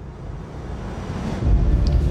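A soundtrack riser: a noisy swell grows steadily louder, then a deep bass rumble comes in about one and a half seconds in.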